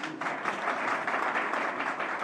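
Audience applauding, the clapping starting suddenly and holding steady.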